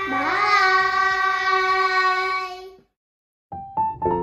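A child's long, drawn-out goodbye call: the pitch swoops up, then holds steady for about two and a half seconds and cuts off. After a short silence, electric-piano notes of outro music begin near the end.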